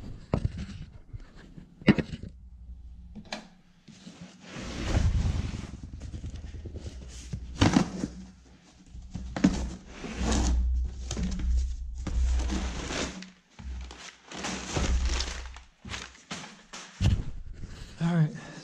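Cardboard shipping box being handled and opened: a run of rasping rips, scrapes and rustles of cardboard and packing, some with a low rumble, broken by a few sharp knocks as the box is moved about.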